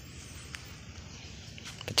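Quiet outdoor background noise in a pause between words, with a faint click about half a second in and a few light ticks near the end.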